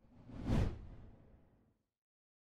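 A whoosh sound effect for a logo reveal, with a heavy low rumble. It swells to a peak about half a second in and fades out over the next second.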